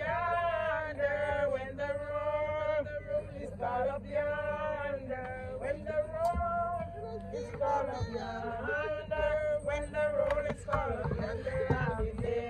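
People singing a gospel hymn, the melody carried in long held notes with short breaks between phrases.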